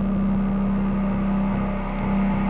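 Sustained electronic synthesizer drone: a steady mid-low tone with a rapid flutter in the bass beneath it.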